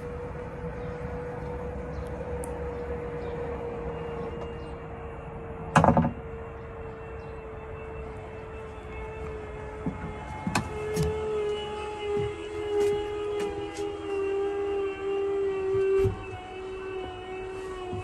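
Electric motors of a VMI Northstar in-floor wheelchair ramp and kneel system running. A steady whine sinks slowly in pitch, with a clunk about six seconds in. About ten seconds in a louder, two-tone whine takes over and stops shortly before the end.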